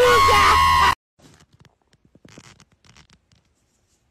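A woman's loud, drawn-out voice that cuts off abruptly about a second in, followed by faint scattered taps and scratching.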